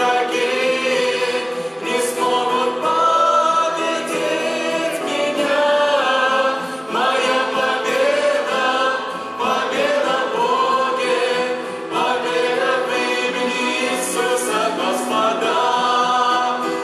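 A small worship vocal group of two women and two men singing a Russian-language praise song in harmony, accompanied by grand piano and electric guitar.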